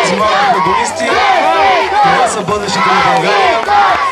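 A group of children shouting and cheering together, many high voices overlapping.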